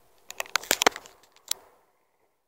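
Handling noise from a handheld camera: a quick run of clicks and rubs, then one sharp click about a second and a half in.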